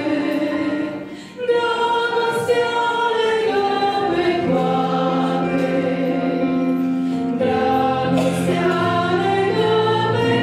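Two women singing a Christian song in Romanian through microphones, accompanied by sustained electronic keyboard chords. The music dips briefly about a second in, then the singing picks up again.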